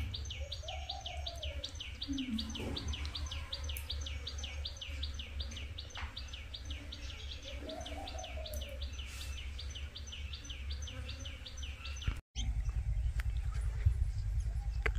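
A rapid, steady series of high chirps, about four a second, from a small chirping creature, over a low rumble. Near the end it cuts off abruptly and gives way to a louder low rumble of wind on the microphone.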